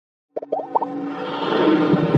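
Intro jingle: a quick run of short rising blips, then a swelling wash of electronic music that grows louder toward the end.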